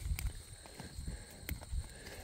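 Faint rustling and a few small snaps of weeds being pulled by hand from the dry soil of a fabric grow bag. A steady faint high-pitched buzz runs underneath.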